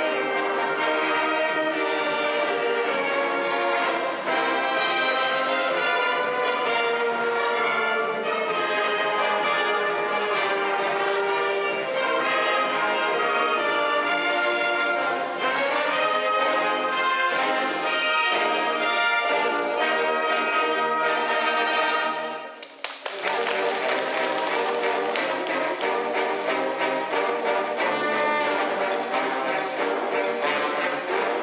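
A brass band of trumpets, trombones, tuba, saxophones and clarinets playing a medley. About three-quarters of the way through the music breaks off for a moment and picks up again in a brighter, fuller passage.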